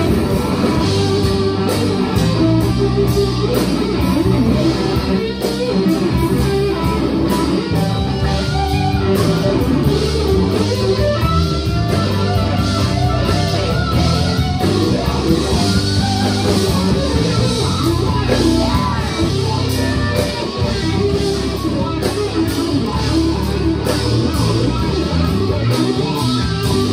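Live blues band playing an instrumental passage: electric guitar out front with bending lead lines over bass guitar and drums.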